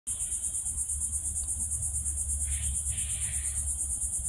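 Steady, high-pitched chorus of insects such as crickets or katydids, pulsing quickly and evenly, with a low hum underneath.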